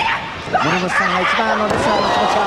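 Wrestling crowd shouting and yelling as a German suplex lands, several voices rising and falling in pitch.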